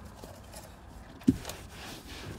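A single dull thump a little over a second in, followed by a light click. Then the soft rubbing of a microfiber cloth starting to wipe across a car dashboard.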